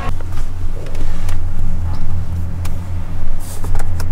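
Low, steady rumble of a car engine in an underground parking garage, heard from inside a parked car, with a few faint clicks.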